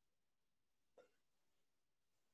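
Near silence on the call, with one brief faint sound about a second in.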